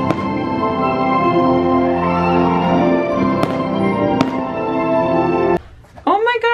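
Music with long held notes, with fireworks shells bursting over it in a few sharp bangs. The sound cuts off suddenly near the end.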